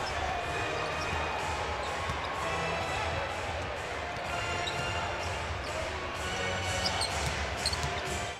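Basketball arena ambience: a steady wash of crowd noise, with a few short high squeaks in the second half.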